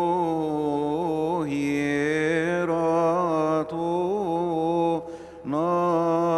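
A single male voice chanting a Coptic liturgical hymn unaccompanied, holding long notes whose pitch winds slowly up and down, pausing briefly twice for breath in the second half.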